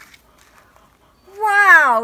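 Near the end, a woman calls out one drawn-out word, its pitch sliding down.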